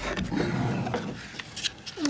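Light scraping and a few small clicks from a Mini R53's plastic door lock actuator being twisted and worked out through the door opening, with a brief murmured "mm" at the start.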